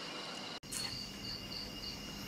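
Crickets chirping faintly in a pulsing high trill. The trill comes in after an abrupt cut about half a second in.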